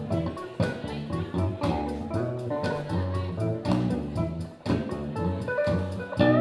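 Live electric guitar and bass guitar playing together over a steady beat.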